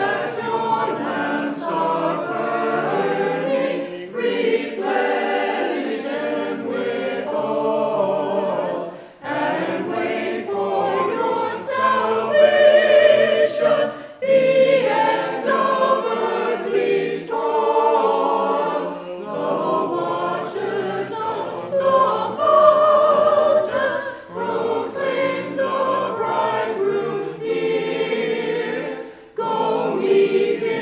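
Church choir of mixed men's and women's voices singing, in phrases broken by short pauses for breath.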